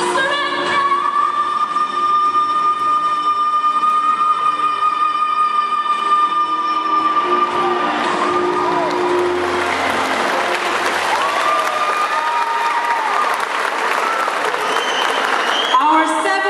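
A young female singer holds one long high note into a microphone over a backing track for about eight seconds. Then the song ends and the audience applauds, with voices mixed in.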